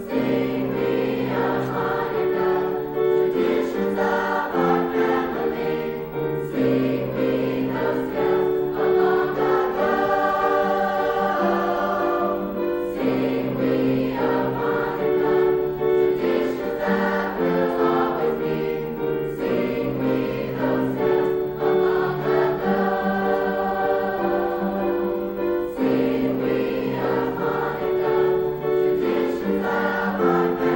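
Mixed high-school choir of male and female voices singing in harmony, held chords changing every second or two.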